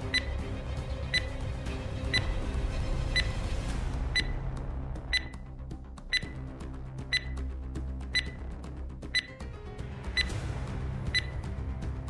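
A quiz countdown-timer sound effect ticking once a second, each tick a short, sharp, high-pitched click, over soft background music.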